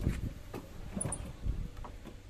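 Hand-cranked three-frame honey extractor spinning in a plastic bucket as it slows, a low rumble with a few scattered knocks and clicks from the frame basket.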